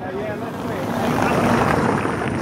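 A team car driving past over cobblestones: the rumble of its tyres on the cobbles and its engine swell steadily and are loudest as it passes near the end.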